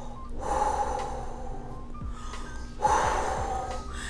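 A woman blowing out two long breaths through pursed lips, the first about a second and a half long, the second about a second.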